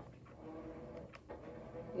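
Faint handling sounds from craft work at a table: a couple of light clicks a little over a second in, over a steady faint background tone.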